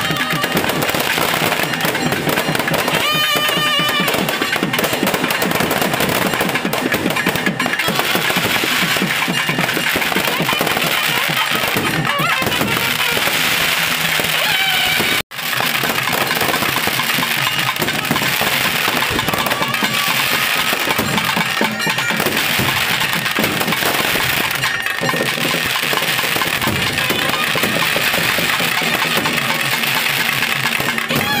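Aerial fireworks crackling and popping in a dense, continuous barrage, mixed with music, with a brief break about halfway through.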